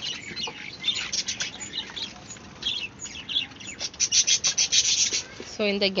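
Birds chirping in short, high-pitched notes, with a quick rapid run of chirps about four seconds in.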